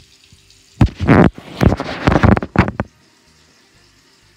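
Loud rustling and knocking from a tablet's built-in microphone being handled as the tablet is moved and set down on a counter, starting about a second in and lasting about two seconds.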